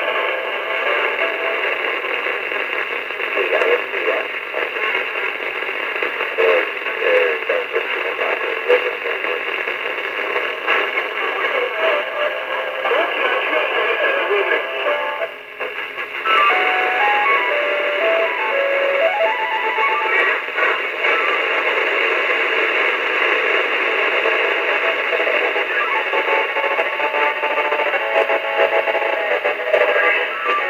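Music received over a CB radio and played through its speaker, thin and narrow with no bass or treble, under a haze of static hiss. The signal briefly dips about halfway through.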